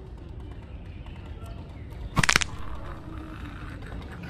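A shoe landing on an outdoor stair step: a short clatter of a few sharp knocks about two seconds in, over faint outdoor background.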